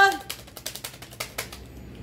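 Tarot cards being handled and shuffled: a quick, irregular run of about ten sharp card clicks and slaps over a second and a half, then they stop.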